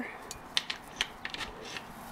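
A handful of light, dry clicks and rustles, about six in two seconds, over a quiet background.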